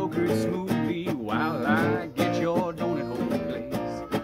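Nylon-string classical guitar strummed, with a harmonica playing along.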